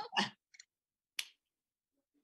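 A brief burst of laughter at the very start, then a single sharp click a little over a second in, with dead silence around it.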